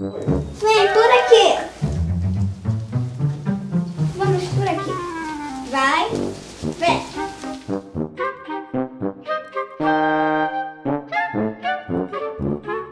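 Instrumental background music in short detached notes, with a held chord about ten seconds in; a child's voice over it in the first half.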